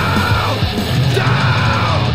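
Heavy metal band playing: distorted electric guitars, bass guitar and an electronic drum kit, with two yelled vocal phrases over them, each dropping in pitch at its end.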